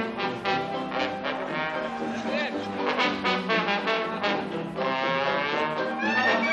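Traditional Dixieland jazz band playing at a steady beat: trombone, cornet and clarinet over banjo and tuba.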